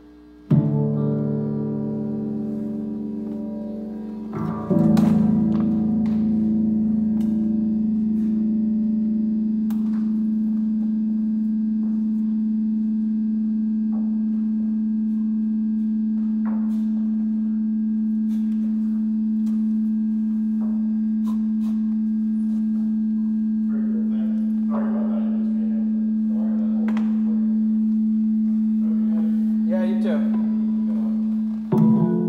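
A sustained musical drone holding one low note with its overtones, coming in about half a second in, swelling louder at about four and a half seconds, then steady. Faint clicks and a short rustling passage come near the end.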